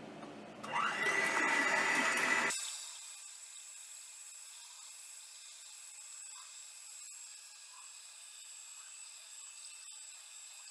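Electric hand mixer beating raw eggs in a bowl: its motor starts about a second in with a rising whine and runs loudly and steadily. A second and a half later the sound drops suddenly to a faint steady high whine.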